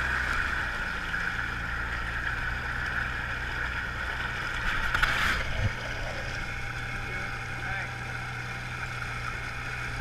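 Side-by-side UTV engine running steadily at low speed as the machine churns through deep mud and water, with one brief louder splash about five seconds in.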